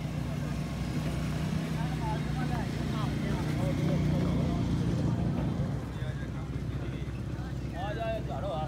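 A steady low engine drone, swelling a little around the middle, under scattered distant voices and chatter.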